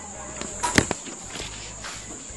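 A few short, sharp knocks or clicks, four in all, the loudest about a second in, over a steady high-pitched hiss.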